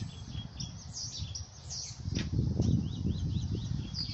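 Small birds chirping in runs of short, quickly repeated notes, over a low rumble that grows louder about halfway through.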